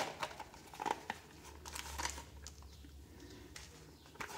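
Zipper of a zippered sunglasses case being drawn open around the case, faint, in short irregular bursts with small clicks from handling.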